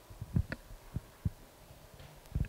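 Microphone handling noise: four low, dull thumps and knocks at uneven intervals over a faint hum.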